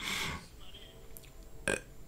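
A pause in a man's speech: a short breath at the start, then quiet with a single sharp mouth click about three-quarters of the way through.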